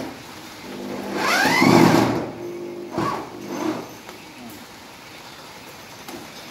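Electric drill driving a screw through a corrugated roofing sheet into a metal frame: the motor spins up with a rising whine about a second in and runs for about two and a half seconds, with a click partway, before stopping.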